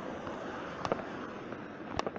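Steady background noise with a few sharp clicks: a quick pair just under a second in and one more at the end.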